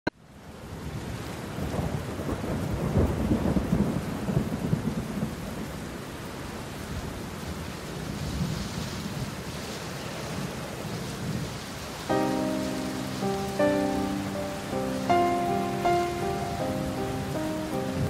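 Steady rain with rolling thunder, the thunder loudest a few seconds in. About twelve seconds in, soft instrumental music with held notes enters over the rain.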